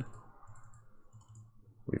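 Faint clicking of a computer mouse and keyboard, a few light scattered ticks over a low steady room hum.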